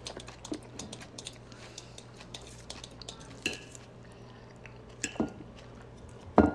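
Faint scattered clicks and light clinks, a few louder than the rest about three and a half and five seconds in, over a steady low hum.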